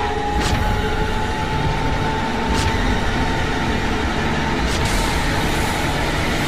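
Film-trailer soundtrack with no dialogue: a dense low rumbling drone under a sustained high tone that slowly rises. Sharp booming hits land about every two seconds, three times.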